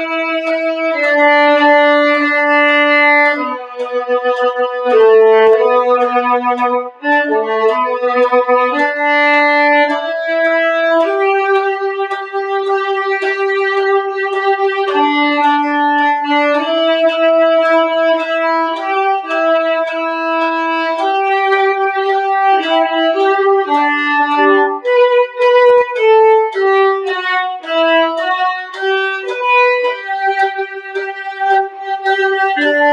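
Solo violin playing a single bowed melody line, each note held about half a second to a second, with runs of quicker notes about four to nine seconds in and again near the end.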